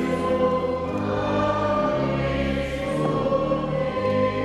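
A choir singing a slow hymn in held chords that change roughly once a second.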